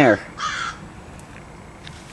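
One short harsh bird call about half a second in, over faint steady background hiss.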